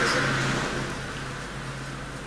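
Breathy laughter that fades over about a second, over a steady low hum.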